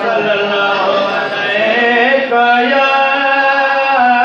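A man chanting a Sindhi naat into a microphone, his voice wavering through ornamented turns and then settling into long held notes about halfway through.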